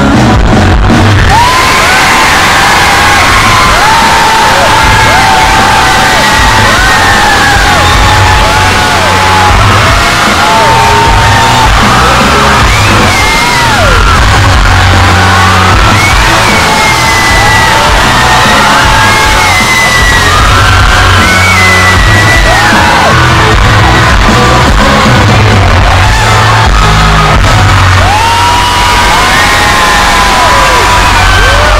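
Loud live concert music through the venue's sound system with a deep, steady bass, under a large crowd screaming and cheering throughout.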